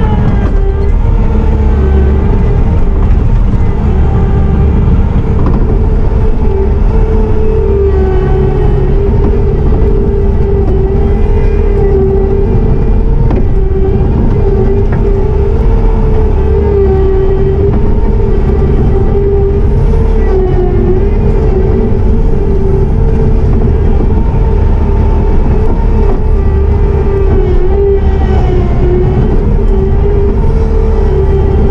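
Bobcat T650 compact track loader's diesel engine and hydraulics running steadily, heard loud from inside the cab, its pitch wavering a little as the machine works dirt.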